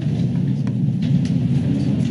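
Steady low rumble of background room noise picked up by the meeting microphones, with a few faint clicks.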